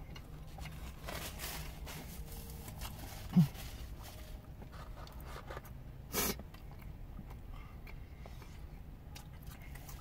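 Close-up chewing and biting of a burger, with soft crunches and mouth noises over a faint steady hum. A short hummed 'mm' about three and a half seconds in is the loudest moment.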